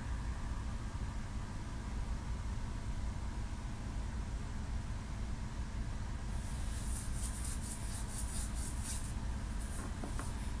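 Steady low rumble with a hiss over it, and a few faint high crackles over the last few seconds.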